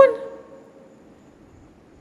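A man's voice ends a word, its last tone lingering and fading over about the first second, then a pause with only faint room noise.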